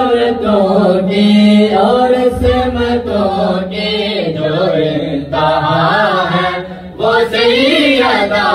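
An unaccompanied Urdu noha chanted in unison by two men and children into a microphone, the voices carrying one sustained melodic line, with a brief breath pause about seven seconds in.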